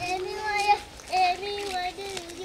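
Children singing a song in high voices, holding notes that step up and down in pitch, in two phrases with a short break about a second in.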